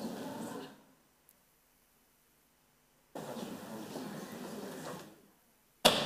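Indistinct murmur of people talking in a large hall, picked up faintly by the microphone, cutting out to dead silence twice. A single sharp knock near the end.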